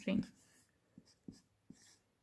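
Marker pen writing on a whiteboard: a few short, faint strokes and taps of the felt tip against the board.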